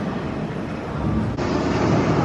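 Steady low rushing room noise of a large indoor hall, with no distinct events, changing abruptly in tone about one and a half seconds in.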